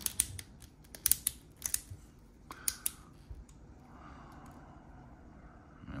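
Plastic action figure being flexed at its stomach crunch joint: a run of small, sharp plastic clicks over the first three seconds, then quieter handling noise.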